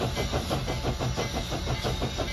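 Steam locomotive running, a fast, even chuffing beat over a low rumble and a steady hiss.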